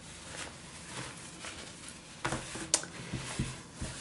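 Faint rustling of bikini fabric being handled and folded by hand, with a few soft brushing sounds a little after two seconds in.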